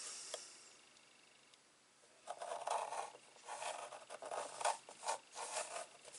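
A score tool drawn along a metal ruler across patterned paper, scoring a diagonal fold line: a run of short scraping strokes that begins about two seconds in.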